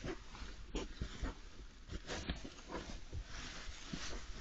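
Badger cubs shuffling and rummaging in dry straw bedding: irregular rustling and crackling of the straw, with short snuffling sounds from the animals.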